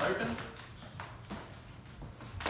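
Dancers' shoes stepping and tapping on a wooden floor during Collegiate Shag footwork: a few short, uneven footfalls.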